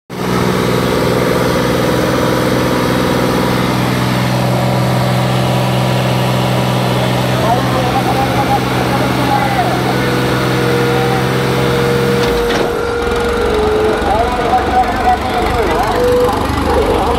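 A New Holland 3630 tractor's diesel engine holds a steady high speed. About twelve seconds in, the sound changes abruptly to a rough, low, uneven labouring under heavy load as the tug-of-war pull begins, hard enough to lift the tractor's front wheels. Crowd voices are heard throughout.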